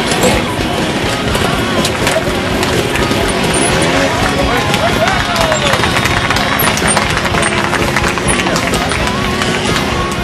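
A trials motorcycle engine running and being blipped as the rider climbs a rocky section, mixed with spectators' voices.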